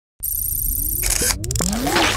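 Sound effects of an animated logo intro: a low rumble starts suddenly, with a high electronic warble over it, then a couple of sharp clicks and several rising sweeps near the end.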